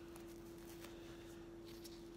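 Quiet room tone with a steady faint hum, and a few soft ticks and rustles from hands adjusting a reborn doll's hair and bow headband.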